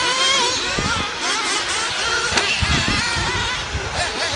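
Radio-controlled 1/8-scale off-road buggies racing on a dirt track, their small engines loud, with a whine that rises and falls as they rev up and back off.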